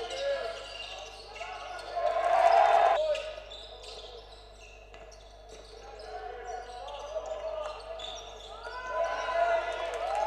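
Live game sound of a basketball game on a hardwood court: a ball being dribbled, sneakers squeaking, and players' voices calling out, louder for a stretch about two seconds in and again near the end.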